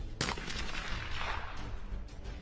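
A single weapon shot about a fifth of a second in, followed by a long echo that rolls away over about a second.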